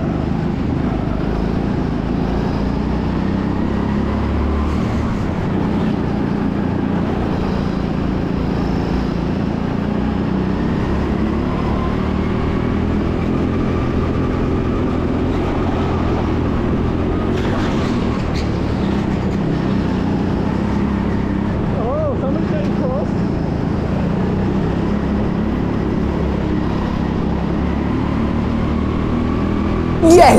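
Rental racing go-kart driven flat out around a track, its motor and tyres running steadily with no let-up in level.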